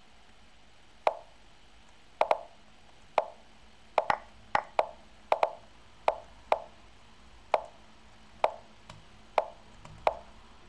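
The Lichess move sound, a short wooden plop played for each chess move, in a fast run of about sixteen as a blitz opening is played quickly. They come unevenly, some in quick pairs about a tenth of a second apart.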